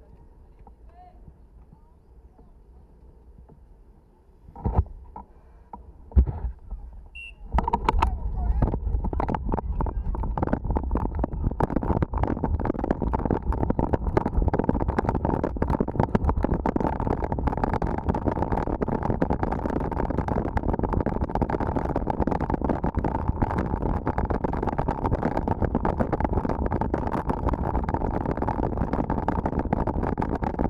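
Mountain bike rolling off from a standstill on a dirt and gravel road. There are two sharp knocks about 5 and 6 seconds in. From about 7 seconds in, a loud, steady rush of wind buffets the bike-mounted camera's microphone, mixed with the constant clatter and rattle of the bike over the gravel as it picks up speed.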